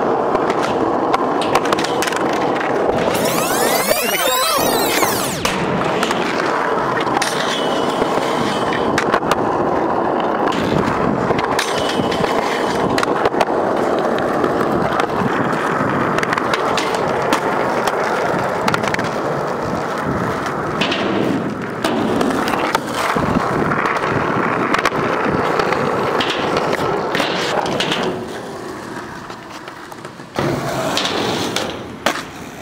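Skateboard wheels rolling steadily over concrete, close up, with short sharp knocks of boards hitting the ground and obstacles; it fades near the end.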